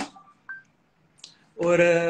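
A man speaking Hindi pauses, then draws out a long 'और' ('and') near the end; during the pause a few faint, short tones are heard.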